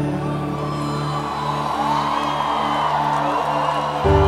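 Sertanejo band holding a sustained chord with long bass notes between sung lines, with a crowd cheering and whooping under the music.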